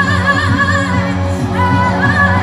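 Live pop concert heard from the crowd: a woman singing with a wavering vibrato over a steady band bass, holding one long note in the second half.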